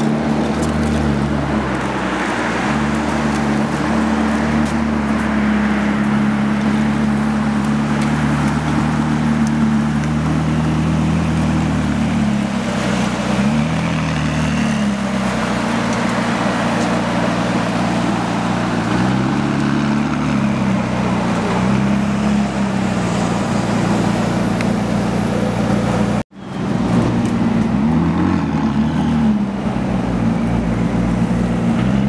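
Supercar engines idling steadily, with a few brief rises and falls in engine pitch from light revving. The sound drops out abruptly for a moment about 26 seconds in, then the idling resumes.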